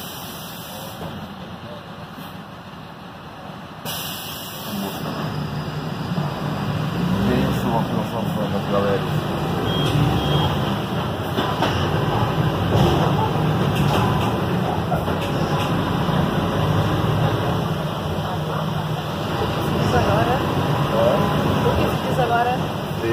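City bus engine running as the bus drives, heard from inside the passenger cabin: a steady low hum that grows louder about five seconds in. Voices talk underneath it.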